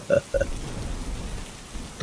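Steady rain falling, with a faint low rumble beneath it. The last two short syllables of a man's chuckle end about half a second in.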